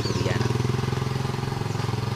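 A small engine idling steadily, with an even low pulsing note.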